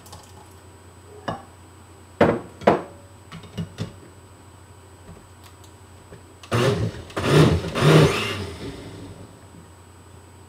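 Countertop blender run in a short burst of about two seconds, grinding the pumpkin-seed paste with the green purée. Before it come a few clunks of kitchenware being handled and set down.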